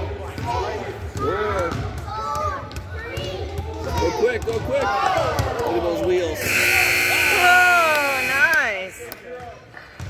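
Gym scoreboard buzzer sounding for about two seconds, marking the end of a timed shooting round, with shouting and cheering voices over it. Before it come excited voices and basketballs bouncing on the hardwood court.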